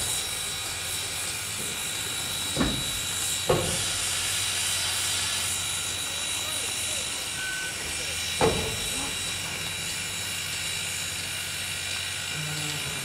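Steady hiss of steam from RBMN 425, a 4-6-2 Pacific steam locomotive, as it turns slowly on a turntable, over a low steady hum and a thin high tone. Three short knocks stand out, at about three, three and a half, and eight seconds in.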